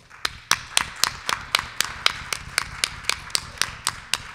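Audience applauding, with one set of hands clapping loudly and evenly, about four claps a second, above the general clapping.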